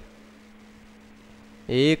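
Faint, steady electrical mains hum with low room noise during a pause in speech; a man's voice starts a word near the end.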